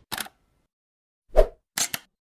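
Logo-animation sound effects: a brief swish at the start, a loud plop past the middle, then two quick clicks near the end.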